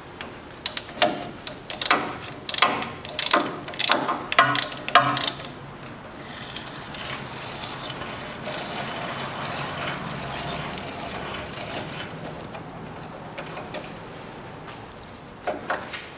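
A hand ratchet on the front stabilizer link bolt clicks in short irregular strokes for about five seconds. Then comes a steady mechanical whirring for several seconds, which fades out, with a couple of clicks near the end.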